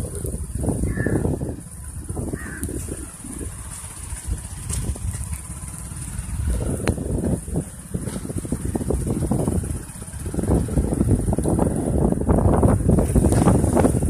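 Gusty wind buffeting the microphone, rising and falling in irregular surges and strongest in the last few seconds.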